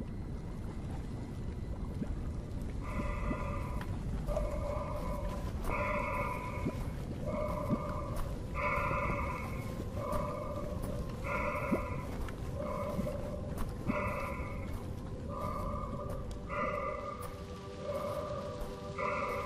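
Darth Vader's mechanical respirator breathing, a steady inhale-exhale cycle that starts about three seconds in and repeats roughly every two and a half seconds, over a low rumbling ambience.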